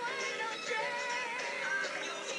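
A number-one pop song playing, with a sung melody over its accompaniment.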